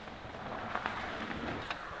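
Mountain bike tyres rolling on a dirt trail: a steady rushing noise that grows slightly louder as the bike approaches, with a few faint clicks.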